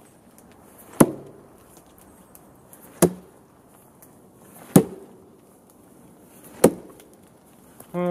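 A thrown Schrade Priscilla makhaira brush sword striking a dead tree trunk four times, sharp impacts about two seconds apart.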